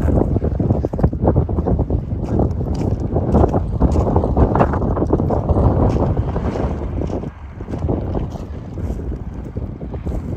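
Wind buffeting a microphone outdoors: a loud, low rumble that rises and falls with the gusts, easing somewhat about seven seconds in.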